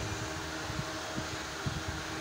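Steady hum of a running fan, with a few faint soft knocks in the low range.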